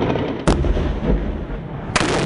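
Gunfire and explosions of armed combat: a sharp, heavy blast about half a second in, trailing into a long low rumble, and another sharp report near the end.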